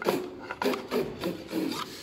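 A small handsaw sawing back and forth on a wooden prop box, a quick run of short strokes.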